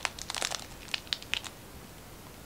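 Japanese rat snake crushing an egg it has swallowed whole, pressing it against a hand: a quick run of small, sharp cracks of eggshell breaking inside its body, which stops about a second and a half in.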